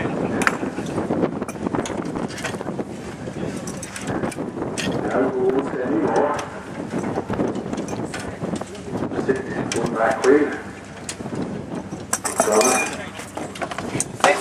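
Spanners and steel tractor parts clinking and knocking in quick, irregular strokes as a Ferguson tractor is worked on by hand, with voices calling out over it.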